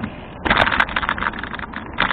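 Ridley Cheetah bicycle and its handlebar camera mount rattling as the bike rolls over a rough, patched concrete surface: a dense clatter of small knocks that starts about half a second in, over a low rumble of the tyres.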